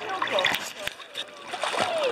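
Water splashing and sloshing close by as a large dog swims, towing a lifebuoy on a rope, with people's voices in the background.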